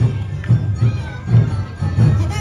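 Awa Odori street-dance music with a steady drum beat, about two beats a second, under dancers' shouted chants and a crowd.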